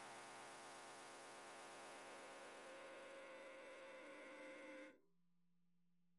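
Near silence with a faint, steady buzzing drone of held tones, which cuts off abruptly about five seconds in.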